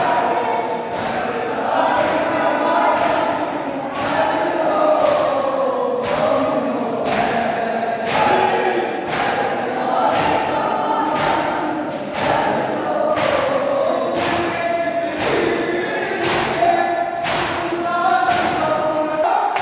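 A crowd of male mourners chanting a noha together in unison. Hands strike chests in matam, a sharp thump about once a second, sometimes in quick pairs.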